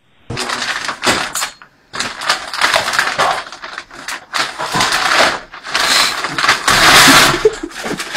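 A paper shopping bag crinkling and rustling loudly as a cat moves about inside it, with a short break about one and a half seconds in.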